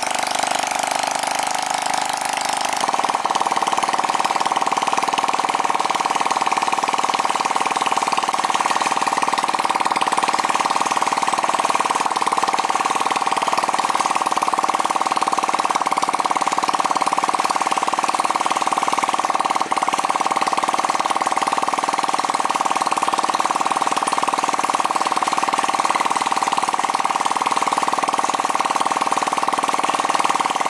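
Rebuilt Honda Super Cub C50 49 cc four-stroke single-cylinder engine running steadily on a test stand, its note settling about three seconds in. A single sharp click comes near the two-thirds mark.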